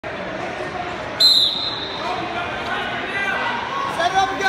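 A referee's whistle blown once, a short shrill blast about a second in, signalling the start of a wrestling bout, over the voices of a gymnasium crowd.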